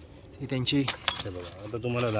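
A couple of sharp metallic clinks about a second in, as a farrier's iron tools and horseshoes are handled on the ground, over a man's voice.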